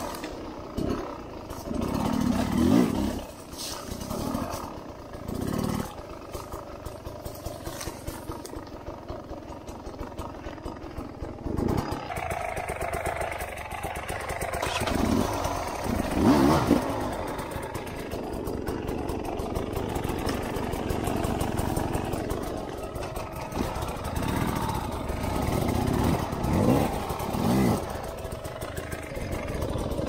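Sherco 250 dirt bike engine running at low revs, with short, uneven bursts of throttle as the bike climbs and picks its way over rocks on a tight trail.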